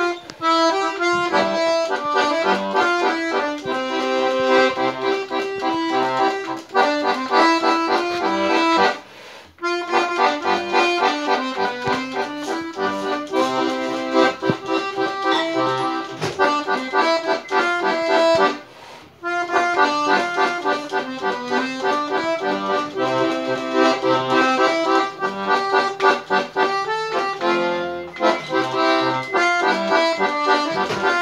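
Eight-bass diatonic button accordion (sanfona de 8 baixos) playing a tune, melody notes over bass accompaniment, with two brief breaks about nine and nineteen seconds in.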